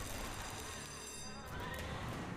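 Western-themed online slot game's sound effects and music playing, fairly quietly, as the bonus free-spins intro animation runs.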